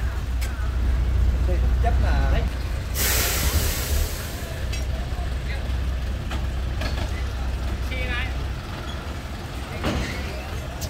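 Old four-wheel-drive truck's engine running with a steady low drone. About three seconds in comes a loud hiss of released air lasting about a second, and the engine then grows fainter as the truck moves off.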